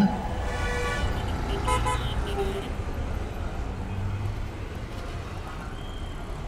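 City road traffic: a steady low rumble of vehicles with car horns tooting a few times in the first couple of seconds.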